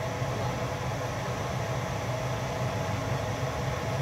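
Pot of rotini pasta at a rolling boil on the stove, a steady bubbling hiss, over a low steady hum.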